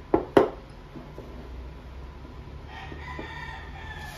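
Two sharp knocks of tableware on a wooden table just after the start, then a rooster crowing in one drawn-out call lasting over a second near the end.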